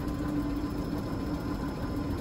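Electric lab vacuum pump running with a steady hum and drone.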